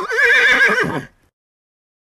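A horse's whinny: one quavering call about a second long that drops in pitch at the end.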